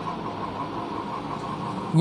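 Steady, low background noise with a faint constant hum.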